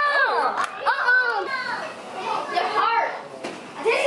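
Several children's voices talking and calling out excitedly, overlapping one another, dipping briefly about three seconds in.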